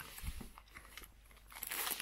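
Plastic tourniquet packet crinkling as it is handled and pulled from a nylon pouch, louder in the last half-second.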